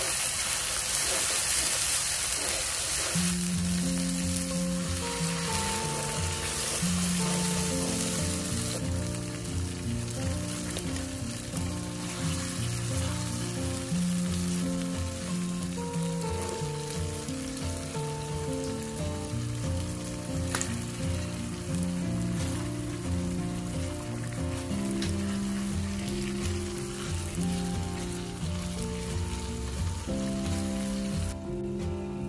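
Chili paste sizzling as it fries in hot oil in a wok. The sizzle is loudest for the first several seconds and then settles lower. About three seconds in, background music with a simple stepping melody comes in over it.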